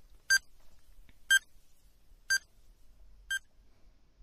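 Countdown-timer sound effect: four short electronic beeps, one each second, ticking off a quiz countdown.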